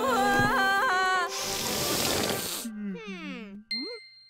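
Cartoon child wailing in tears over background music for the first second or so. Then comes a burst of hiss, several falling whistle-like glides, and a short high ding near the end, a comic light-bulb-idea sound effect.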